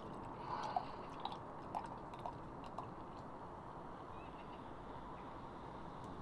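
Dark lager being poured from a glass bottle into a stemmed glass: faint pouring with a few small gurgles and drips in the first half, then a soft steady wash of liquid.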